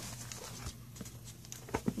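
Thin Bible pages being leafed through: a few soft paper clicks and taps, a little louder near the end.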